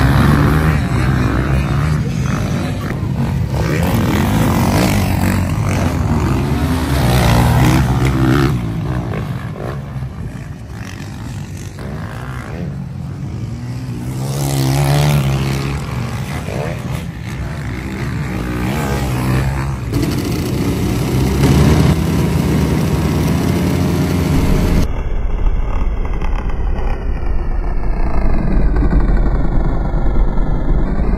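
Several motocross bikes racing on a dirt track, their engines revving up and down as they pass through corners, heard in a series of abruptly cut shots. For the last few seconds a steadier low rumble takes over.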